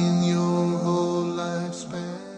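A man's voice chanting a slow, unaccompanied melody in long held notes.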